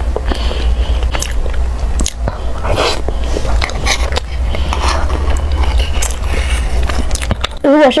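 Close-miked eating sounds: chewing and lip noises on a soft, creamy dessert, with scattered clicks and scrapes of a metal spoon inside a small tin can, over a steady low hum.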